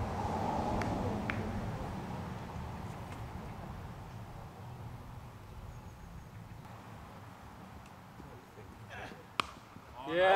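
Open-air ambience with a faint murmur of voices that fades over the first few seconds. Near the end comes a single sharp crack of a cricket bat striking the ball.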